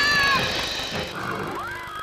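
Cartoon soundtrack: a drawn-out pitched cry with several overtones, sliding slowly down in pitch and fading about half a second in. It is followed by quieter sounds and a short rising tone near the end.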